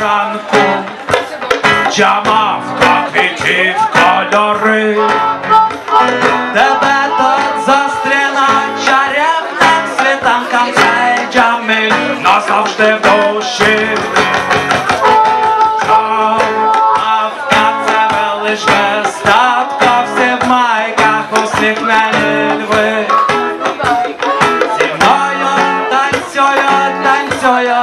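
A small acoustic reggae band playing live: strummed acoustic guitar with a second guitar and a hand drum keeping a steady rhythm.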